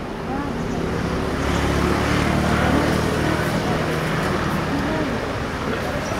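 A motor vehicle's engine passing by, its drone swelling about two seconds in and then easing off, with a few faint voices.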